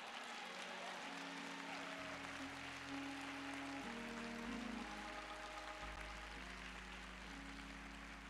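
A congregation applauding over sustained instrumental chords, with a low bass note entering about two seconds in and the chord changing twice.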